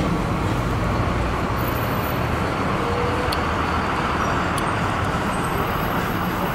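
Steady city street traffic noise, an even wash of passing vehicles with no single event standing out.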